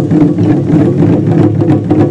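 Ensemble of Japanese taiko drums (wadaiko) struck with bachi sticks, many drummers playing together in a fast, steady rhythm.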